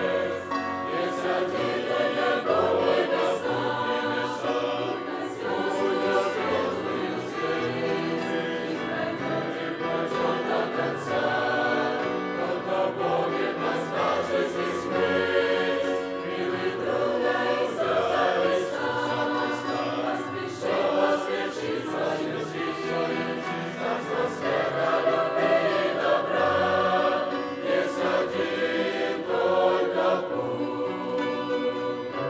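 A mixed youth choir of women's and men's voices singing a Christian song together, continuously without a break.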